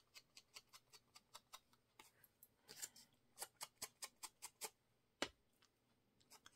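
Faint, quick taps of a mini ink blending tool's foam pad dabbing ink onto paper, about four to five taps a second, with one sharper tap about five seconds in.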